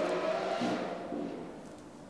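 A high-revving sports car engine driving past, one held note that falls slightly in pitch as it fades away.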